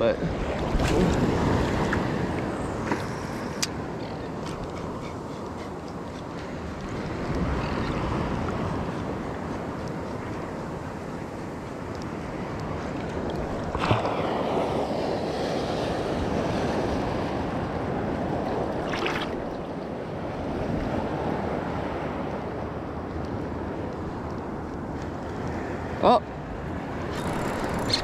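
Surf washing and breaking around a wader, in slow swells that rise and fade every several seconds, with wind buffeting the microphone. A few short, sharp clicks stand out, one near the middle and one near the end.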